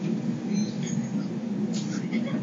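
Cabin noise of a Kintetsu Urban Liner limited express train running slowly as it pulls into a station: a steady low rumble, with a few brief high squeaks about half a second to one second in.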